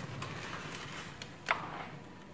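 A single sharp knock about one and a half seconds in, as a round metal serving tray of dishes is set down on a glass-topped table, over faint room hum.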